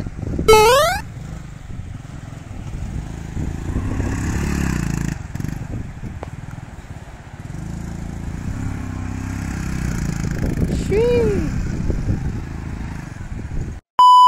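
Small motorcycle engine running on a sand beach, its revs rising and falling twice as the bike is ridden in loops. Short whooping calls from a person break in near the start and again near the end.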